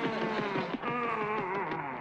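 Cartoon power-mower motor sound effect running under fast chase music.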